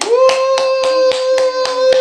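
Hands clapping about four times a second under a long, steady, high-pitched 'woo' cheer held through the whole stretch.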